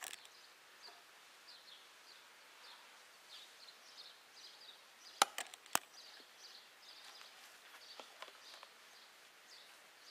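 Faint bird chirps repeating every half second or so, with three sharp clicks in quick succession a little past halfway and a lighter click later.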